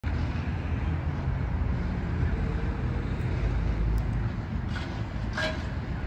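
Harley-Davidson CVO Road Glide V-twin engine idling with a steady low rumble. A brief higher-pitched sound comes in about five seconds in.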